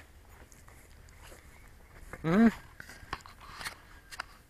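Quiet outdoor background with a man's short questioning "mm?" about two seconds in, followed by a few faint clicks near the end.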